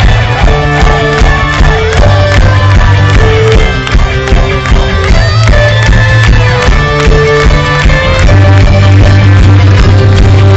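Loud live amplified music from a folk-rock band playing an instrumental passage, with a steady drum beat, a strong bass line and guitars.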